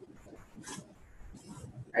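A quiet pause in a lecture room: low room tone with two faint, short hissy sounds, one under a second in and one about a second and a half in.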